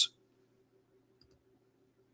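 Near silence: a faint steady low hum of room tone, with a couple of very faint clicks about a second in.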